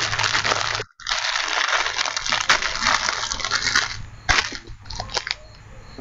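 Loud crackling, rustling noise with many sharp clicks coming through a video-call audio feed. It drops out briefly about a second in and turns fainter after about four seconds.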